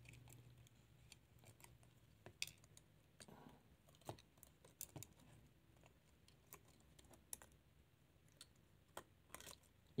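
Near silence with about a dozen faint, scattered small clicks and taps as a Samsung Galaxy S7 Edge's motherboard is pried loose with a thin stick and lifted out of the phone's frame.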